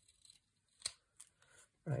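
Scissor blades clicking: one sharp click a little under a second in, then two fainter ticks.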